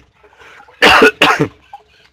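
A man's short, rough cough about a second in, in two or three quick bursts.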